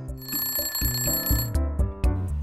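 An alarm-clock style ringing sound effect, lasting about a second and a half, signalling that the countdown timer has run out, over light background music.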